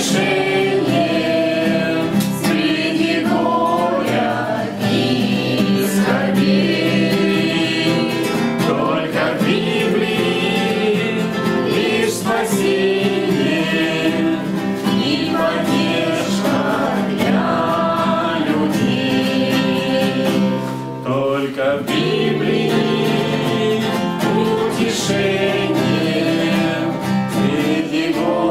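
A man and several girls singing a song together to a strummed acoustic guitar, with a brief lull about three-quarters of the way through.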